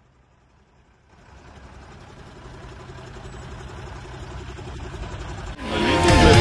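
Tow truck engine running, starting about a second in and growing gradually louder. Near the end loud music comes in over it.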